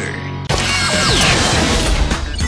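Mechanical sound effects for an animated TV promo graphic, starting suddenly about half a second in, with a falling whine, over music.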